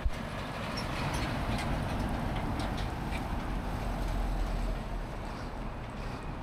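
Heavy trucks driving past on the highway: steady engine rumble and tyre noise that swells through the middle and fades near the end.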